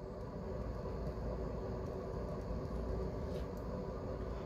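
Steady low background hum with a few faint held tones: the room and recording noise that runs beneath the lecture.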